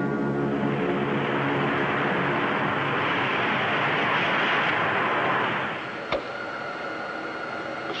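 A dramatic music sting fades into a swelling rush of spaceship engine noise, a 1950s sci-fi sound effect. The rush drops off suddenly about three-quarters of the way through, leaving a steady hum with a thin high whine.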